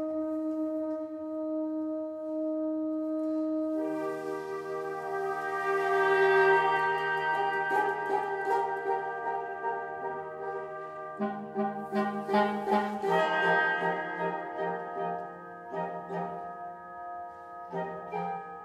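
Wind octet of flute, clarinet, two bassoons, two trumpets and two trombones playing contemporary chamber music. A single held note sounds alone, then about four seconds in the other instruments join in a swelling sustained chord, and from the middle on quick repeated detached notes run over muted brass held underneath.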